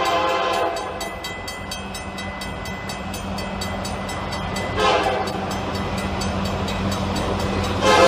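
Union Pacific diesel locomotive approaching a road crossing, its air horn sounding a short blast at the start and another about five seconds in, then a longer blast beginning near the end, over the steady rumble of its engine.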